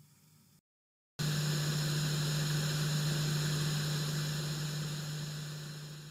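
A steady low electrical hum under a bed of hiss, starting suddenly about a second in and slowly fading toward the end.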